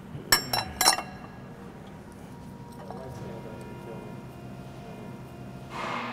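Three quick metal-on-metal clinks with a short ring in the first second, as the water pump pulley is fitted onto its hub. A faint steady background follows.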